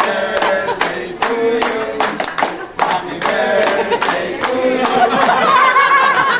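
A group of people clapping in a steady rhythm, about two to three claps a second, while several voices sing together over it.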